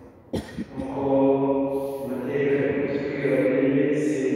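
Slow chanted singing in long, steady held notes, which begins after a brief pause near the start.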